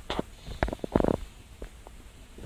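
Faint handling noise: a few light clicks and rustles in the first second or so, then quieter.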